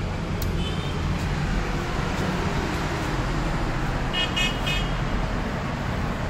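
Steady city street traffic noise, with a short car horn toot about a second in and a quick run of horn toots around four seconds in.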